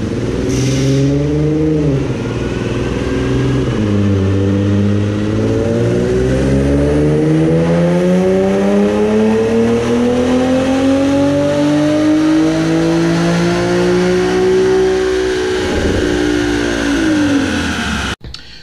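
Infiniti G37's 3.7-litre V6 with catless exhaust making a full-throttle chassis-dyno pull. The revs dip twice in the first few seconds as the automatic shifts up, then climb steadily in one gear for about ten seconds before the throttle closes near the end and the engine and rollers wind down.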